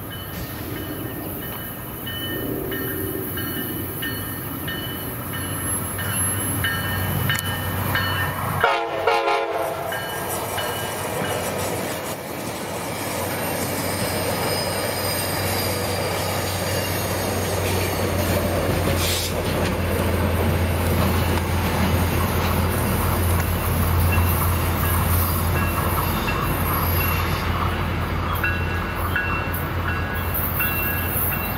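Tri-Rail diesel commuter train passing close by: a short horn blast about nine seconds in, then the locomotive's engine running steadily and growing louder as the pushing locomotive at the rear of the train comes past, over the rumble of the wheels on the rails.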